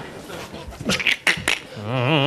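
Mouth-made comic sound effects: a few sharp clicks in the middle, then near the end a voiced hum with a wobbling, rising pitch begins.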